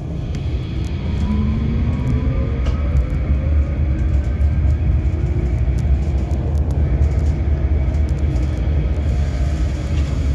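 Berlin GT6NU tram heard from inside while in motion: a steady low rumble of the running gear on the rails, with faint whining tones that glide upward in pitch.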